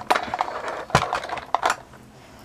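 Rummaging: a few sharp knocks and clatters of small hard objects being moved about, with rustling between them, as someone searches for a headphone case.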